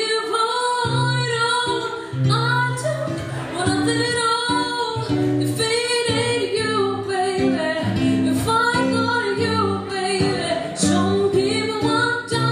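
A woman singing live with acoustic guitar accompaniment, her voice holding long notes that bend in pitch over steady low strummed or picked guitar notes.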